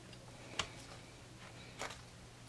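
Faint clicks from a laptop's DDR3 SO-DIMM memory slot: one about half a second in and a short cluster near the end, as a RAM module is released from the slot's spring retaining clips.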